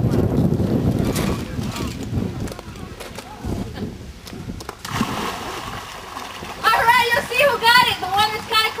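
American alligators splashing in a shallow pond as they go for a dead rat thrown into the water, with a few sudden splashes and sloshing. Heavy low noise on the microphone for the first second and a half, and voices start near the end.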